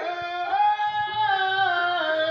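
A stage performer singing a folk-drama song, holding long notes that slide up and down in pitch.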